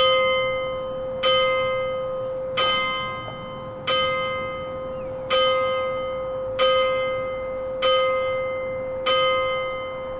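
A single church bell, rung from below by a bell rope, tolling at a steady pace: eight strikes of the same note about 1.3 s apart, each ringing on and fading into the next.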